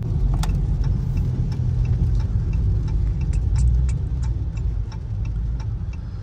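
Low rumble of a Dodge Charger R/T's 5.7-litre Hemi V8 and road noise heard inside the cabin as the car slows in traffic, with a faint regular ticking about three times a second throughout.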